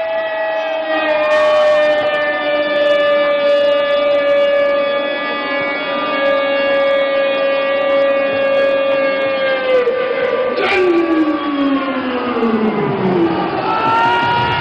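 A soldier's long drawn-out shouted parade command, one voice held on a single note for about ten seconds, sagging slightly and then dropping away. A second voice overlaps it with a falling cry near the end.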